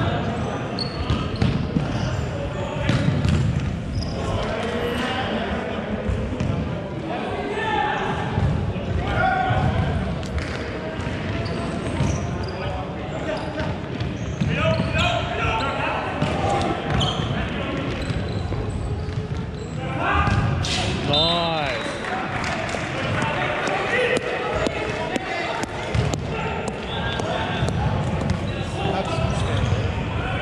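Indoor soccer game on a wooden sports-hall court: distant player shouts and the thuds of the ball being kicked and bouncing, echoing in the large hall. There is a short squeak about two-thirds of the way in.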